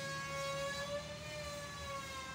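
A steady, held pitched tone with several overtones, drifting slowly lower in pitch, at a moderate-to-faint level.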